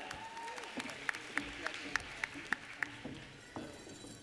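Light applause in a large hall: one pair of hands clapping steadily, about three claps a second, over a faint background of audience murmur, then dying away.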